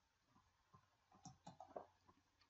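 Near silence, with a few faint computer mouse clicks in the second half.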